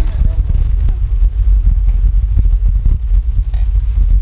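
Heavy wind rumble on the microphone while riding a bicycle, with scattered small knocks and rattles from the ride over the path.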